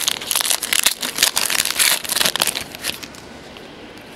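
Trading card pack wrapper crinkling and rustling as the cards are pulled out and handled, with quick crackles that die down after about three seconds.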